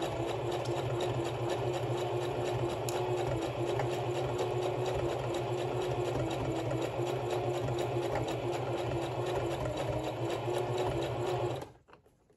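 Singer electric sewing machine running steadily, stitching a zigzag seam through fleece: a constant motor hum with a fast, even patter of needle strokes. It stops suddenly just before the end.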